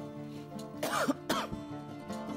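A person coughing twice in quick succession about a second in, over steady instrumental background music.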